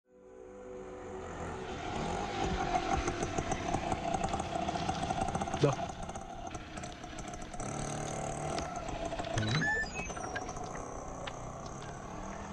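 Auto-rickshaw engine running, fading in over the first couple of seconds and holding steady for about the first half.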